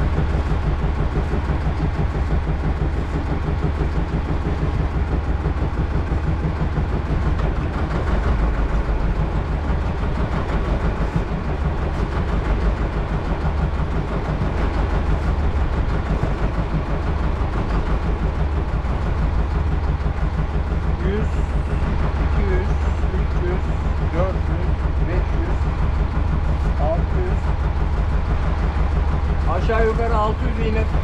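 Small fishing boat's engine idling steadily, with a rapid, even low pulse.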